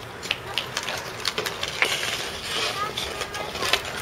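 Hockey sticks knocking and scraping on ice with a puck, several sharp clacks, mixed with the scrape of skate blades on the ice.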